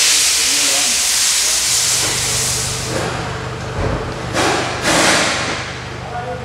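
A long, loud hiss of pressurised spray that starts suddenly, followed by two shorter hissing bursts a little past four and five seconds in. A steady low hum sets in after about two seconds.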